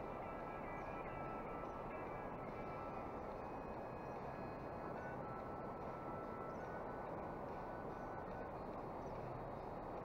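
Faint, steady rushing noise of the flowing river and wind on the camera microphone.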